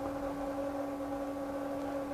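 Steady low electrical hum in the sound system: one constant tone with a fainter one above it.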